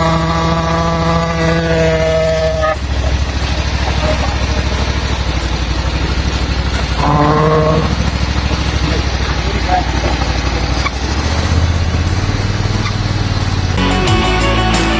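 Portable fire pump's Vanguard petrol engine running steadily under load, with a steady whining tone over it for the first few seconds and again briefly about seven seconds in, as the pump primes in auto mode; the engine note shifts about eleven seconds in.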